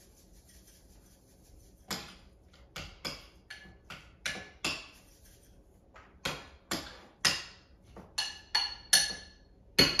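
A metal fork clinking against a glass bowl as mashed egg salad is stirred: a quick run of sharp taps, each with a brief glassy ring. It starts about two seconds in and is loudest near the end.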